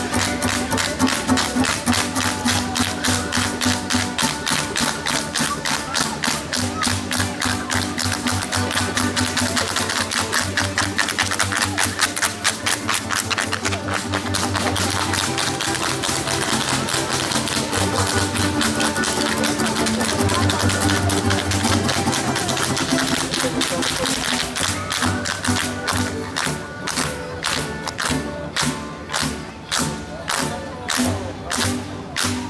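A small string band (double bass, guitar and violin) plays a son, with the dancers' wooden-soled sandals stamping a fast, continuous zapateado on stone paving. Near the end the stamps thin out into separate, more widely spaced beats.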